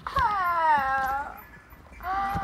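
A single high-pitched, drawn-out vocal whine that falls slowly in pitch over about a second, then fades.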